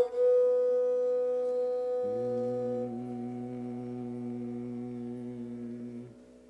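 Indian classical music in Raag Kalyan: a bowed fretted string instrument holds a long steady note. About two seconds in, a lower sustained note sets in beneath it, and the high note drops out a second later.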